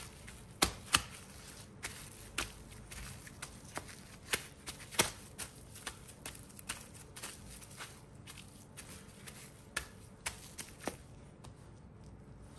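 Plastic cling wrap crinkling and crackling under hands that press and smooth a flat block of cookie dough on a bamboo board. Irregular sharp crackles and light taps throughout, a few louder ones near the start, midway and near the end.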